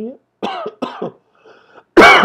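A man coughing several times, with the loudest, harshest cough near the end.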